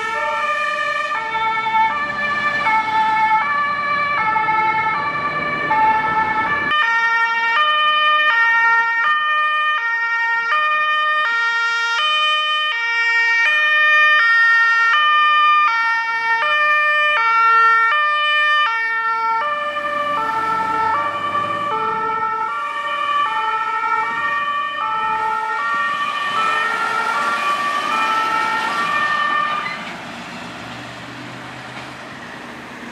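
German two-tone emergency sirens (Martinshorn) alternating high and low on passing emergency vehicles. From about a third of the way in until about two thirds through, two sirens sound at once, out of step with each other. Engine and road noise runs under them before and after.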